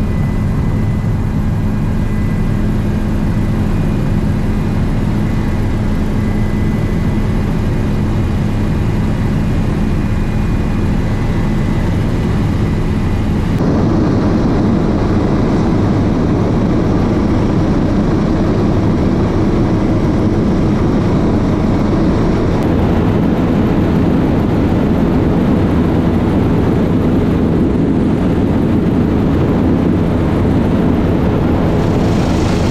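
Helicopter engine and rotor noise heard from inside the cabin in flight: a loud, steady drone. It changes abruptly about 13 s in to a louder, rougher noise, and shifts again slightly about 23 s in.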